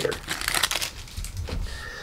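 Plastic wrapper of a Magic: The Gathering Jumpstart booster pack crinkling as it is pulled off the stack of cards, busiest in the first second and then fainter rustles.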